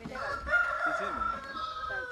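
A rooster crowing: one long drawn-out call that holds steady and then falls in pitch at the end.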